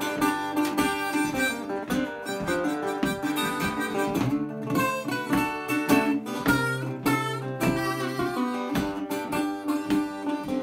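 Acoustic blues instrumental: a harmonica plays a solo line over a resonator guitar's accompaniment.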